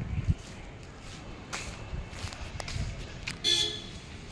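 A vehicle horn gives one short, loud honk about three and a half seconds in.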